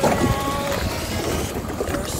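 Wind on the microphone and choppy sea water against a small wooden boat's hull, a steady rushing noise, with faint music underneath.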